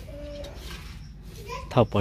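A dove cooing once, a short steady low call just after the start, with a voice speaking briefly near the end.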